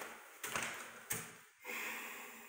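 A few light taps and clicks, then a short soft hiss near the end.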